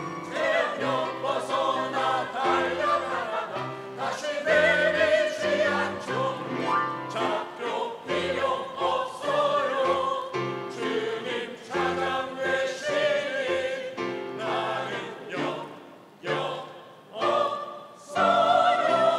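Mixed choir of men and women singing a Christian choral song in Korean, phrase after phrase, with the sound briefly dropping between phrases near the end.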